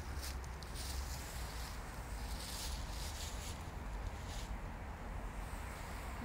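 Dry fallen leaves rustling and crunching in several short bursts, as of steps or running through leaf litter, over a low steady rumble.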